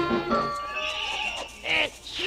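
A recorded Christmas song ends about half a second in and a horse whinnies, a high call that breaks into two falling cries near the end, as a sound effect on the music track.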